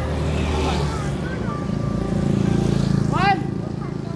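Motorbike engines running with people's voices mixed in, and a high-pitched cry about three seconds in.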